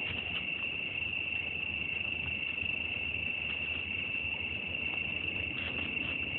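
Crickets chirring in one steady, unbroken high-pitched chorus, with a few faint ticks over it.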